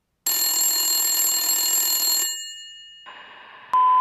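A telephone rings once for about two seconds, then the ring dies away. Near the end a faint hiss comes in, followed by a click and a steady beep tone.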